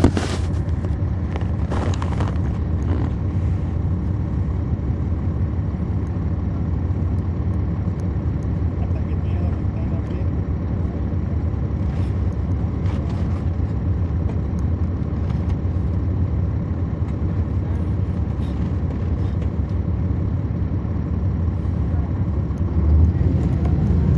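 Cummins ISL9 diesel engine of a 2010 NABI 40-SFW transit bus, heard on board from the back seats, running with a steady low drone. A few light rattles and clicks come early on. Near the end the engine gets louder and rumbles deeper.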